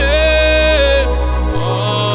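A man singing a gospel worship song into a microphone, holding one long note for about a second, over backing music whose low bass note changes about a second and a half in.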